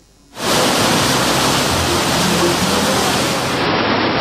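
Loud, steady rushing roar of fast-flowing floodwater, starting suddenly about half a second in.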